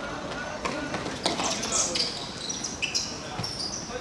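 A football being dribbled and kicked on an artificial-turf pitch, giving a few sharp knocks, with players' shouts and calls around it.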